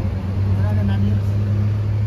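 A motor vehicle's engine idling with a steady low hum.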